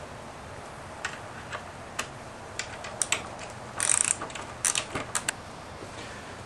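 Hand tools working the steel hardware of a folding table leg: sharp, irregular metallic clicks, with a short clattering run about four seconds in, as the leg is bolted to its bracket with a socket ratchet and wrench.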